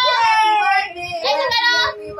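A high, child-like voice singing, with a long held note that slowly falls in pitch during the first second.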